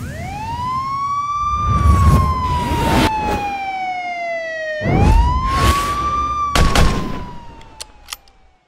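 Sound effects for an animated logo intro. A synthetic siren-like tone rises, then slowly falls, and the sweep repeats about five seconds in, over whooshes and deep hits. It fades out near the end with a couple of clicks.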